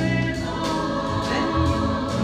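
Live stage performance of a rock-musical number: voices singing together in chorus over a band, with a strong bass and a steady beat.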